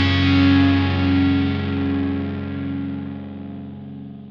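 Final chord of a rock song ringing out: distorted electric guitar held and fading steadily away as the track ends.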